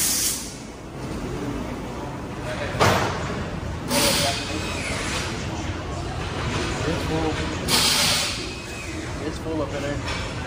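Compressed air hissing in four short bursts, near the start, about three and four seconds in, and about eight seconds in.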